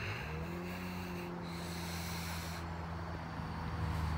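A steady, low mechanical hum with a clear pitch, like a running motor, rising briefly as it sets in just after the start. A faint hiss comes over it for about a second near the middle.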